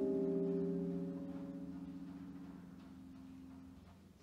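Final chord of a percussion front ensemble's mallet keyboards ringing out and fading away, the higher notes dying first and the low notes lingering until nearly the end.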